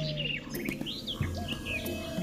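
Birds chirping in short, scattered calls over a low, steady background hum.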